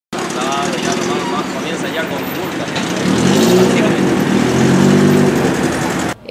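Loud street noise: traffic, with a vehicle engine running close by from about three seconds in, and indistinct voices of passers-by.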